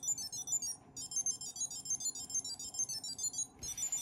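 Ekster tracker card ringing: a fast, high-pitched electronic beeping melody of short notes, with a brief pause about a second in, stopping shortly before the end.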